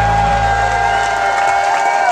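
A live rock band's final chord ringing out, its bass notes dropping away about one and a half seconds in, as the crowd cheers and applauds.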